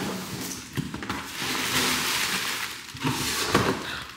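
Cardboard and plastic packaging rustling and crinkling as a delivered box is opened by hand, with a few sharper crackles near the end.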